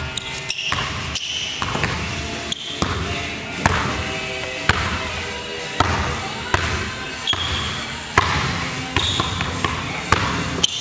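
Basketball dribbled on a hardwood gym floor, sharp single bounces about once a second, over background music.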